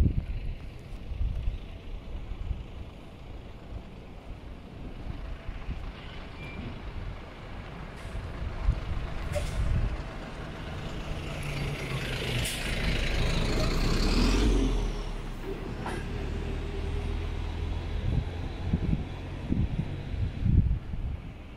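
Truck engine running with a steady low rumble; a few seconds past the middle, a rushing noise and heavier rumble build up and then cut off abruptly.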